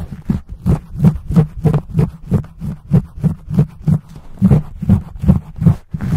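Fingertips scratching and pumping a fuzzy microphone cover right on the microphone, in fast, deep rubbing strokes about three a second.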